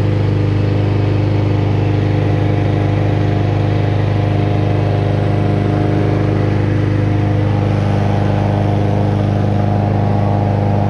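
Lawn mower engine running at a steady speed, close by, with a constant low hum and no change in pitch.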